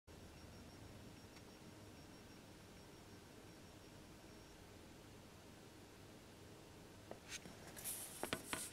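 Near silence with faint room hiss. About seven seconds in come a few soft clicks and rustles that thicken toward the end, as a shellac record is handled and set down on a turntable.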